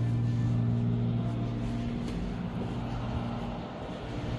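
Steady low mechanical hum and rumble, easing slightly in level toward the end.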